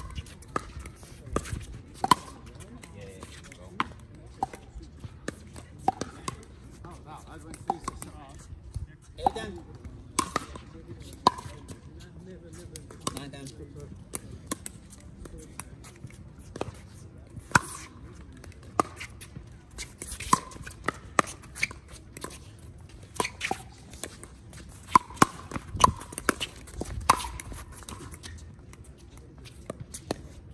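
Pickleball paddles hitting a plastic pickleball in doubles rallies. There are dozens of sharp pops, each with a brief ring, at irregular intervals, with a quick flurry of hits about three quarters of the way through.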